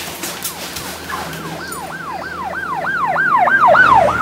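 Emergency-vehicle siren in a fast yelp, each sweep rising and falling, about three a second, growing louder toward the end as if approaching.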